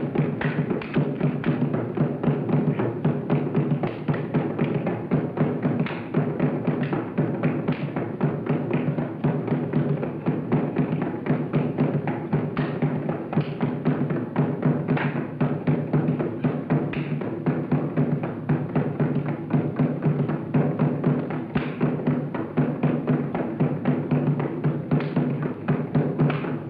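Drum-led soundtrack music for a dance, with a fast, steady beat that runs on without a break.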